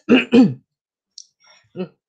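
A man clearing his throat: two short rasps in quick succession, followed by a faint click about a second later.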